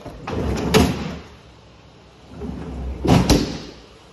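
A stainless steel French-door refrigerator door being opened and then shut. Each movement is a short rush of noise: the first has a click about a second in, and the second ends in two knocks about three seconds in as the door closes.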